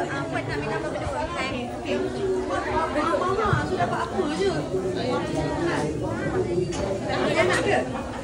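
Overlapping chatter of several people talking at once, with no single voice standing out.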